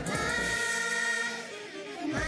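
Children's TV theme song: a group of voices sings together, holding one long note on an "a" vowel. The drums and bass drop out about half a second in, leaving the held chord on its own.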